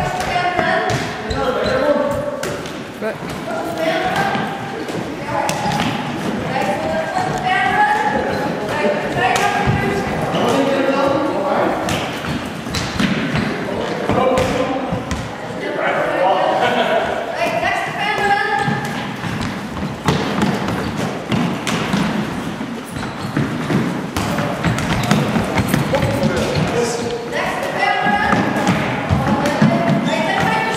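Players calling and shouting to each other during a game, over repeated thuds of a Gaelic football being passed, caught and bounced and of feet on a wooden sports-hall floor, in a large echoing hall.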